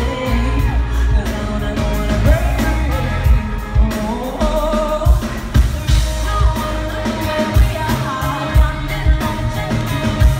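A female pop singer singing lead through a microphone over a live band with a steady drum beat, heard over a concert PA system.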